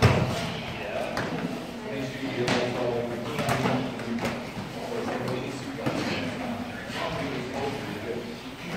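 Wrestlers' bodies hitting and scuffing on a foam wrestling mat, with one heavy thud right at the start and smaller knocks after it, echoing in a large gym with voices in the background.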